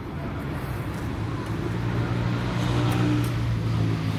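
A motor vehicle's engine running with a low steady hum that grows louder over the first three seconds, as if approaching or passing.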